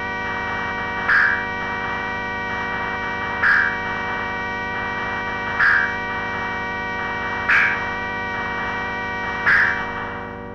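Industrial electronic music: a steady, dense buzzing drone with many overtones, like amplified mains hum. A short, brighter accented sound recurs about every two seconds, five times in all.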